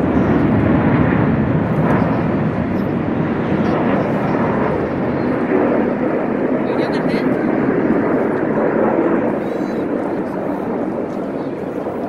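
Jet engines of the Frecce Tricolori's Aermacchi MB-339 formation flying past overhead: a loud, steady rushing roar that eases a little near the end.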